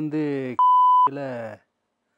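Television censor bleep: a single steady high beep about half a second long, dropped over a word in a man's speech, which breaks off when it starts and picks up again when it stops.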